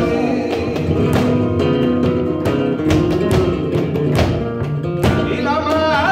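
Live flamenco: a flamenco guitar playing with rhythmic hand-clapping (palmas), the claps coming about twice a second. A male voice sings, most clearly near the end.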